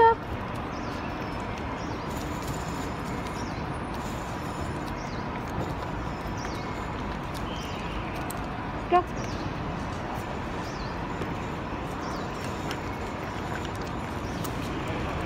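Steady outdoor street background noise, broken twice by a person's voice saying "go": once at the start and once about nine seconds in.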